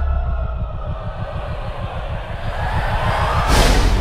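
Low rumbling drone of horror-trailer sound design with faint held tones above it, and a rising whoosh that swells near the end.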